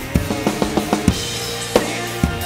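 Acoustic drum kit played live: a quick run of rapid strokes in the first second, then a heavier hit just after it and another near the end, over a rock song's backing track.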